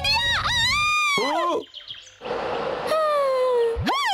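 A cartoon chick's high-pitched, bird-like squawking cries, gliding up and down, followed by a falling whistle over a hiss and a quick rising sweep near the end.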